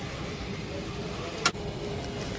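Steady low background hum with a faint steady tone, and one sharp click about one and a half seconds in.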